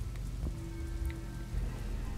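A quiet, steady background bed: a rain-like hiss over a low rumble, with a few faint, sustained musical tones.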